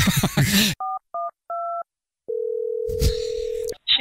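Telephone keypad dialing 112: three short two-tone DTMF beeps, then a steady single-pitched ringing tone for about a second and a half, broken by a brief burst of noise partway through.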